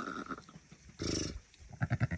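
A ewe making low, pulsing maternal rumbles, about three short calls, while she licks dry her newborn lamb.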